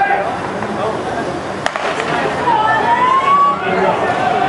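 Starting gun fires once with a sharp crack about a second and a half in, sending off a men's 110 m hurdles heat. Spectators' voices and a rising shout follow.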